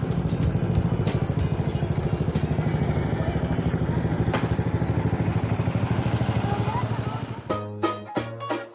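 Motorcycle engine running steadily with a rapid, even pulse as the bike is ridden along the street. Near the end it gives way to plucked-string music.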